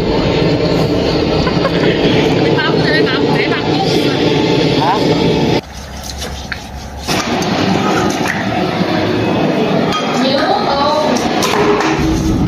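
Steel wool scrubbing a cow's head in a metal basin of water, with metallic clinks. The sound dips sharply for about a second and a half midway.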